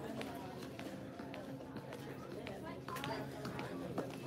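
Quiet shop ambience: faint, distant voices of other shoppers, with a few light ticks.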